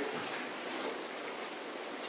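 Steady hiss of room tone and recording noise, with no distinct event.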